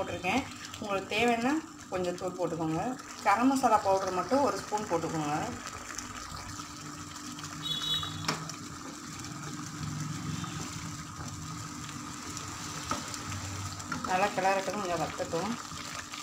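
Egg masala gravy simmering in a pan with a steady low hiss, while a spatula is worked through it, with a few light taps against the pan. A person talks over it during roughly the first five seconds and again near the end.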